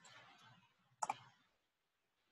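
Computer keyboard being typed on: faint key taps, then one sharp keystroke click about a second in, as a search term is finished and entered.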